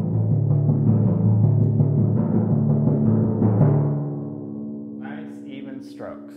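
Timpani struck in quick, even strokes, three notes on each drum, alternating between the two middle drums so that two low pitches trade back and forth. The playing stops a little under four seconds in, and the drums are left to ring and die away.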